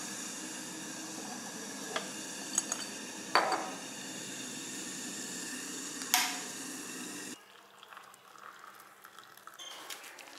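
A few light knocks and clinks of jars on a kitchen counter, then a sharp click of a wall switch being pressed. A steady background hiss cuts off suddenly about a second after the switch click.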